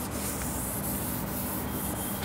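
Whiteboard eraser rubbing across the board in repeated wiping strokes, a steady scuffing hiss.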